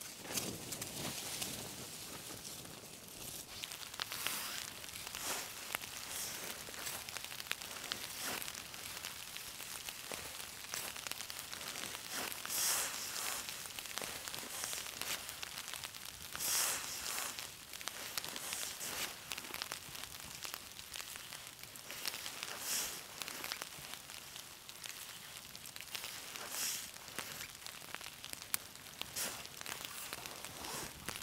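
Wood campfire crackling, with many small sharp pops over a steady hiss and a few louder hissing swells every few seconds.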